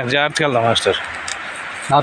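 A man speaking for about a second, then a pause of about a second before he speaks again.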